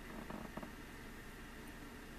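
Faint breathing of a man blowing out cigarette smoke, with a few soft clicks about half a second in.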